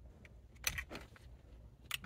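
Faint handling noises from undoing the ground wire behind a steering-wheel airbag module: a few light clicks and rustles a little over half a second in, and a sharper click near the end.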